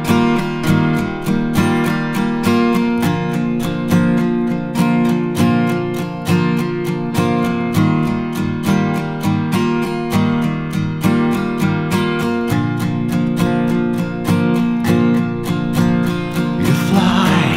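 Instrumental intro of a song: an acoustic guitar strummed in a steady, even rhythm, with no vocals yet.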